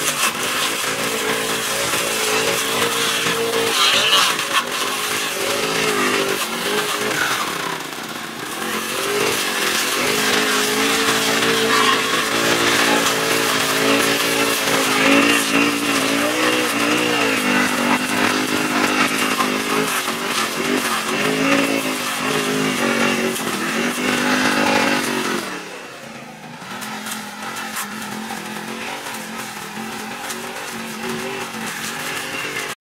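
Petrol brush cutter's small engine running at high revs while it cuts dry grass and weeds, its pitch rising and falling over and over as the throttle is worked. Near the end it drops to a lower, quieter note.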